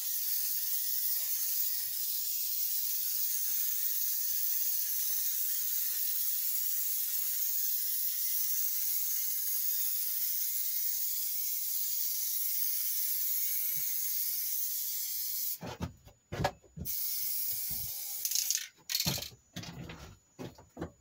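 Aerosol spray-paint can spraying in one long continuous hiss, then, about fifteen seconds in, a run of short broken sprays with gaps between them.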